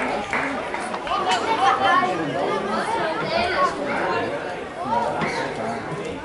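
Chatter of spectators: several voices talking at once and overlapping, none standing out as clear words.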